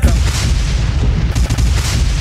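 Sound-system gunshot and explosion effects between dubplates: a dense, booming volley with heavy bass that cuts in sharply as the singing stops.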